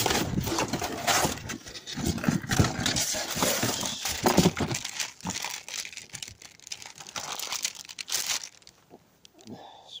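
Plastic bags and packaging rustling and crinkling as rubbish is rummaged through by hand, with small knocks, dying down near the end.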